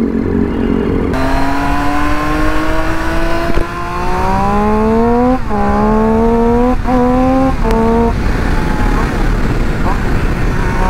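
Triumph Street Triple's inline three-cylinder engine on its stock exhaust, pulling away from low revs and accelerating up through the gears. The note rises and drops back at each of about four quick upshifts, then the throttle eases off about eight seconds in.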